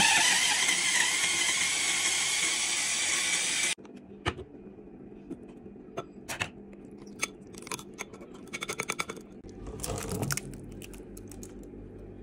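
Small electric mini chopper blending chilies and shallots into sambal: a loud steady whir for nearly four seconds that cuts off suddenly. Then scattered knocks and clinks, with a quick run of taps and a scrape, as the glass bowl is opened and the sambal is scraped out.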